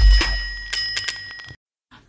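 Notification-bell sound effect on a subscribe card: a bright bell ding of several clear tones that rings and fades, with a few light clicks, and cuts off sharply about a second and a half in. It opens on the fading end of a deep boom.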